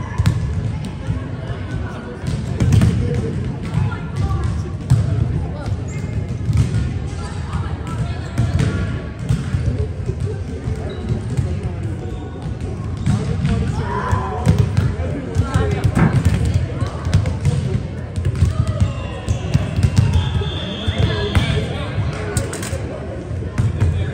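Volleyballs being struck and bouncing on a hardwood gym floor during warm-up: scattered sharp smacks and thuds at irregular intervals, echoing in a large gymnasium.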